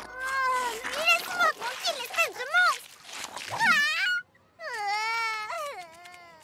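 Cartoon creature's voice-acted vocalizing: a string of wordless whining, crying calls that glide up and down in pitch, broken by a brief pause about four seconds in.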